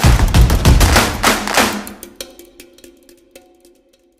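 Percussive intro music: a run of loud drum hits for about two seconds, then a quiet held chord with scattered ticks that fades out.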